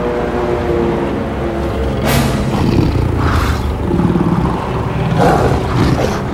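Animated-film soundtrack: a tense orchestral score over a heavy low rumble, with animal growls or roars swelling about two seconds in and again near the end.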